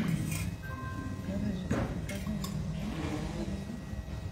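A few light clinks of a small metal spoon against a water cup as water is taken for ācamana, the ritual sipping of water for purification.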